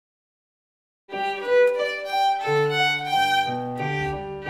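About a second of silence, then intro music starts suddenly: a violin playing a melody, joined about halfway by lower sustained notes underneath.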